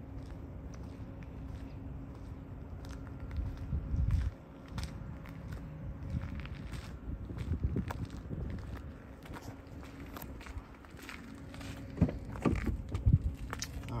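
Footsteps on asphalt with wind rumbling on the microphone and a faint steady hum underneath. Near the end come a few sharp knocks and clicks as a car's rear door is opened.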